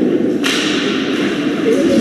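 A sharp crack of an impact in an ice hockey arena about half a second in, ringing on through the hall for around a second, over a steady murmur of spectators' voices.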